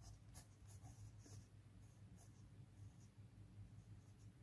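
Faint scratching of a pen writing letters on a lined paper notebook page, in short irregular strokes.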